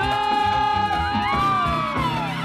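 Live salsa band playing, with one long held high note and a second note that rises and then falls over it, and the audience cheering.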